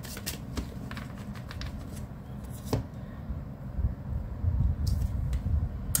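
A deck of angel tarot cards being shuffled and handled by hand. A run of quick papery clicks comes in the first two seconds, then quieter handling with a few sharp taps and low bumps as a card is drawn.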